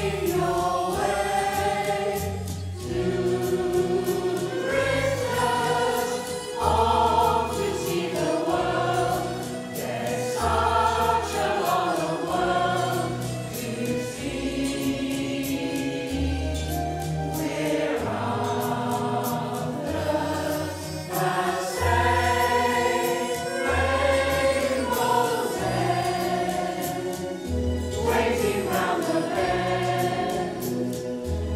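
Mixed community choir of men and women singing in harmony, with low bass notes underneath that change every second or two.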